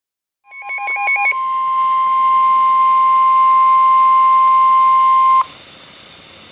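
NOAA Weather Radio receiver sounding an alert. A short run of rapid beeps gives way to the steady 1050 Hz warning alarm tone, held for about four seconds before it cuts off abruptly and leaves faint radio hiss. The tone signals that a tornado warning broadcast is about to follow.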